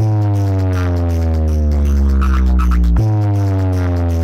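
Bass-heavy electronic music played loud through a large stacked DJ loudspeaker system, made of long sustained bass notes that each slide slowly down in pitch, with a new note striking about three seconds in.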